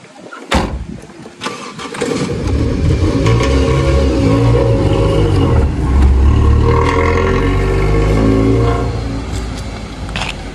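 A sharp knock about half a second in, then an old sedan's engine starts about two seconds in and runs loudly, revving up and down as the car pulls away.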